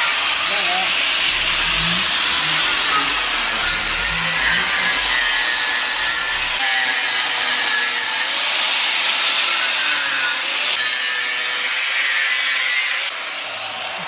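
Corded angle grinder cutting through the steel casing of a scooter exhaust silencer: a steady, harsh grinding whose motor pitch wavers as the disc bites. Near the end the cut stops and the sound drops away as the disc is lifted off.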